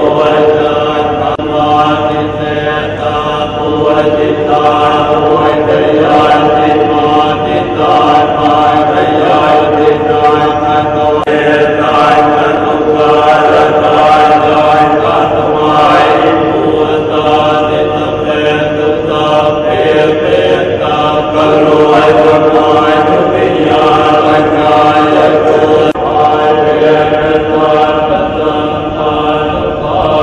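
Thai Buddhist monks chanting together in a steady, continuous low drone of many voices.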